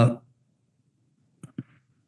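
A man's brief 'uh' trailing off, then a pause with two short, faint clicks about a second and a half in.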